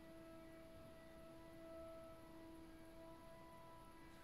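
Faint sustained ringing tone: one low steady note with a few higher overtones that swell and fade, over quiet room tone.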